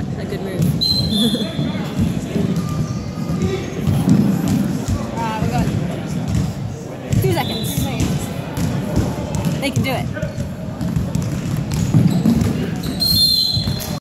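A basketball bouncing on a hardwood court in a large echoing gym, with players' voices calling out. Three brief high-pitched squeaks sound, about a second in, midway and near the end.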